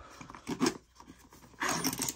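Metal hand tools clicking and rustling against each other and the fabric of a tool tote as they are put into a pocket and picked out. Short irregular handling noises come about half a second in and again near the end.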